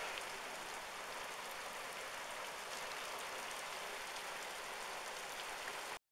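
Hail and heavy rain falling on a wet street: a steady hiss dotted with faint ticks of stones striking.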